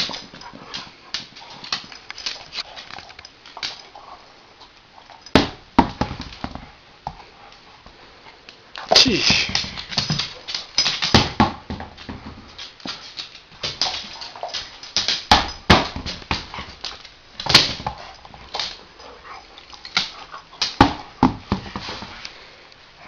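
German shepherd playing with a red rubber toy on a hardwood floor: a run of sharp clicks and knocks from claws and the toy on the floor, growing denser and louder from about nine seconds in.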